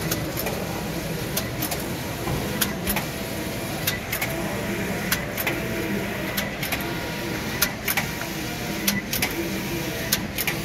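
Computerized flat knitting machine running: a steady mechanical hum with a regular rhythm of sharp clicks, in pairs about every second and a quarter.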